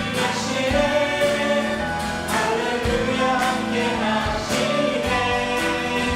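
A worship team of mixed male and female voices singing a Korean praise song together, with instrumental accompaniment including acoustic guitar and a steady beat.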